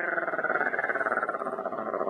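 A woman imitating a cat's purr with her voice: a steady, rapidly fluttering rumble.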